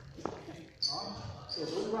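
Badminton rally sounds in a large hall: a light knock, then a sharper racket strike on a shuttlecock a little under a second in, with high-pitched squeaks of court shoes on the floor. A voice starts just at the end.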